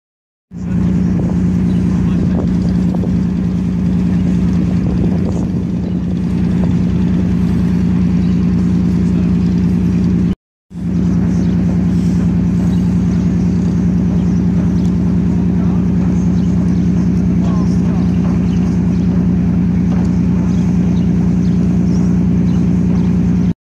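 Steady, loud low machinery drone, a constant hum like running engines or generators. It cuts out briefly about halfway through.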